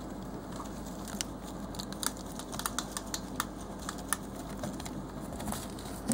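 Several hamsters lapping cola from a small ceramic dish: irregular small, sharp clicks and ticks over a steady low hum.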